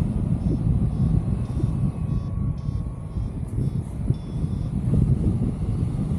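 Airflow buffeting the microphone of a paraglider pilot's camera in flight, heard as a loud, low rumble that swells and eases.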